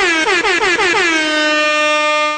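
A loud horn-like sound effect, edited in between two spoken phrases: one held note that wavers up and down several times in its first second, then settles lower and holds steady until it cuts off.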